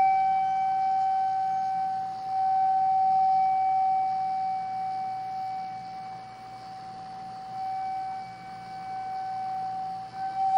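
Jinashi shakuhachi, an end-blown bamboo flute, holding one long steady note that swells slightly about two seconds in and fades gradually toward the end.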